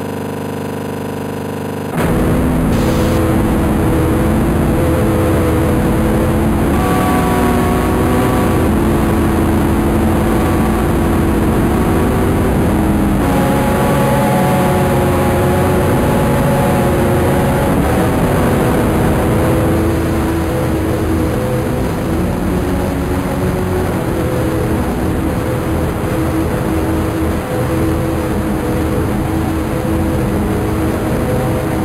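Harsh, heavily distorted sound effect. A steady electronic buzz gives way abruptly, about two seconds in, to a much louder, dense roaring noise with droning held tones that shift every few seconds.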